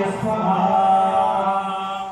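Hindu priest chanting mantras at a havan fire ritual, a male voice intoning in long, held tones on a steady pitch.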